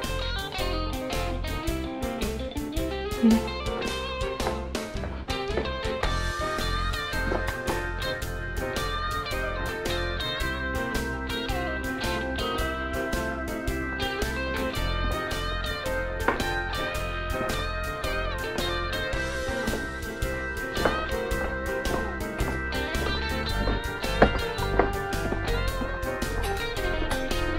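Instrumental background music with a steady beat, led by guitar.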